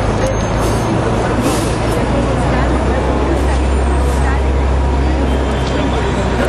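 City bus engine running close by, a steady low rumble that grows stronger about a second in, over street noise and people talking.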